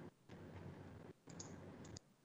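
Near silence: faint room noise over a video-call microphone, with a few soft clicks. The line drops out briefly twice.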